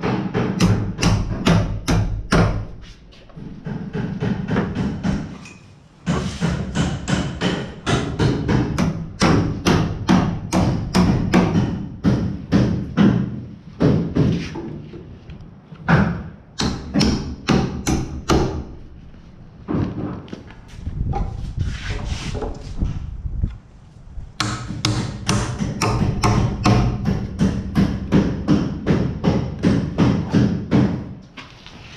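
Hammer driving nails into wooden studs to mount plastic electrical boxes: quick runs of strikes, about three a second, in several bursts with short pauses between.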